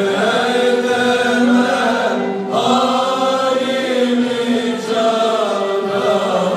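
Male soloist and men's choir singing a Turkish song in long held notes, with a short break about two seconds in.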